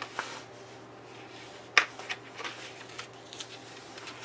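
Coloring book pages being handled and turned: faint paper rustling with a few light clicks and one sharper tap a little before halfway.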